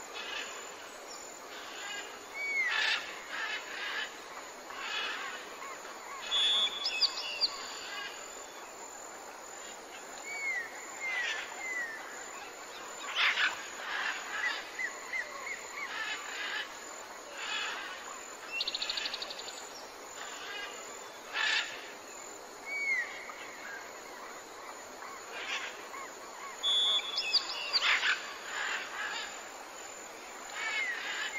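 Several birds calling and chirping: short whistles, quick downward-curling notes and rapid trills, over a steady background hiss. The same run of calls comes round again about every twenty seconds.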